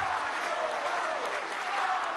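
A large audience of legislators applauding steadily in a parliamentary chamber, with some voices mixed into the clapping.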